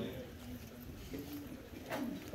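Faint, indistinct voices: short low hums or coos with no clear words, over the hush of a large room.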